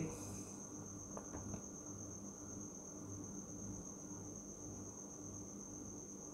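Quiet background: a thin, steady high-pitched whine with a faint low hum underneath. No other sound stands out.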